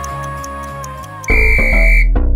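Soft background music, then about a second in an interval timer's single long, steady electronic beep marks the end of the get-ready countdown and the start of the work interval. A loud electronic music beat comes in with it.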